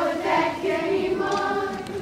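A group of voices singing together, holding notes in a song from a stage musical.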